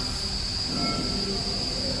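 Steady high-pitched electrical whine over a low hum from the powered-on coiling machine, with a few faint short tones near the middle.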